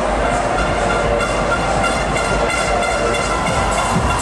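Beatless build-up of a techno track: several sustained synth tones held over a steady wash of hiss, with no drum beat.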